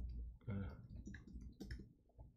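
Computer keyboard typing: a quick run of several keystrokes in the second half.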